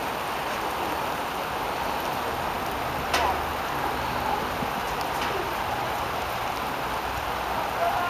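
Steady hiss of rain falling, with a brief distant shout a little after three seconds in.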